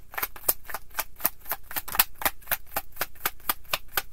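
Tarot deck being shuffled overhand in the hands: a quick, even run of card slaps, about six a second.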